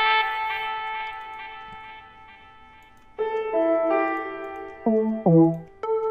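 Piano-like software-instrument keyboard notes. A chord rings out and fades over about three seconds, then a new chord comes in, and two short lower notes follow near the end.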